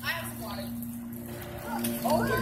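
A steady low hum, with faint voices trailing off in the first half second.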